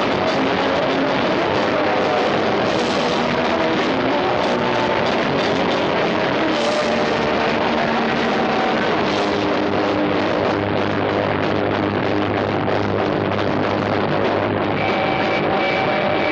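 Punk rock band playing live: electric guitars, bass and drum kit, loud and continuous.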